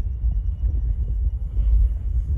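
A low, uneven rumble on the microphone, with no clearer sound above it.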